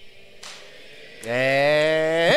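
Near-quiet for about a second, with one faint click, then a man's voice holding a single long, low drawn-out vowel for about a second.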